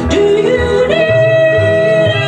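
Two women singing into microphones with piano accompaniment; the melody climbs in short steps, then a long note is held from about halfway through over steady bass notes.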